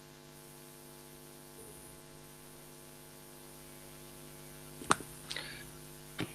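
Steady electrical hum with light hiss on the call's audio line, a low, even drone. About five seconds in there is a single sharp click.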